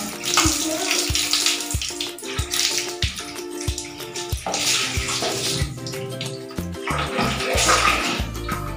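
Water poured from a plastic dipper onto a cat's wet fur, splashing down in separate pours a few seconds apart, over background music with a steady beat.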